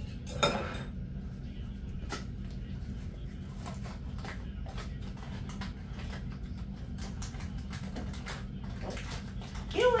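Scattered light clicks and taps of a utensil against a bowl and a seasoning container being handled and opened, over a steady low hum.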